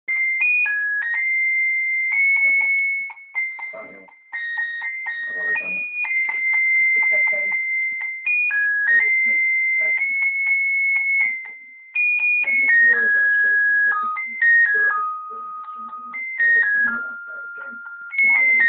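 Battery-powered Santa Claus figure toy playing a tinny electronic tune, one note at a time, breaking off briefly twice before carrying on. Scattered rustles and knocks sound beneath the tune as the dog noses at the toy.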